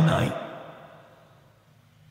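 A man's amplified voice ends a word and trails off, fading smoothly over about a second and a half. A short stretch of near silence follows.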